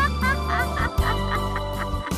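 Intro jingle music: a held low chord under a quick run of short high notes that rise and fall, several a second.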